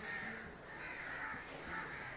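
Crows cawing several times, faint outdoor background.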